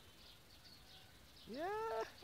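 A short, high-pitched vocal call near the end that rises steeply in pitch and then holds, over faint high chirping.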